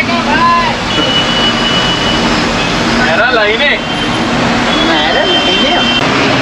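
Cab noise of an Ashok Leyland 12-wheel truck on the move: a steady engine hum and road noise. A voice is heard briefly three times, and a thin high-pitched tone sounds twice.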